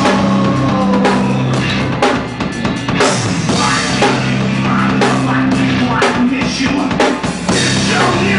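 Live rock band playing: a drum kit with kick drum and cymbal hits, steady and frequent, over held low notes.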